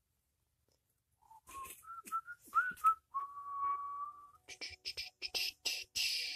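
A man whistling a few short notes and then holding one long, steady note, followed by a quick run of short scratchy rustles near the end as the felt damping mat is handled.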